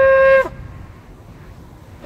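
The end of a long shofar blast: a steady held note that breaks off with a short downward drop in pitch about half a second in.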